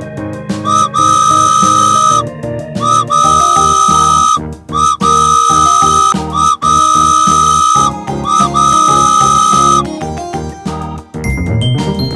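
A high whistle sounding five long blasts, all on the same pitch, each sliding up into the note, over cheerful children's background music.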